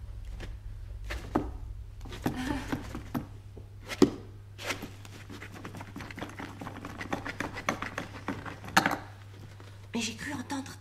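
A series of sharp knocks and clicks, the loudest about four seconds in and another near the end, over a steady low hum.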